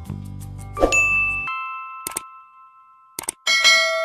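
Background music cuts off about a second and a half in, over a ringing chime. Then come two sharp clicks about a second apart and a bright bell ding that rings on: the click-and-bell sound effect of an animated subscribe button.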